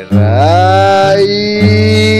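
A singer's voice slides up into one long held note, without words, over acoustic guitar accompaniment.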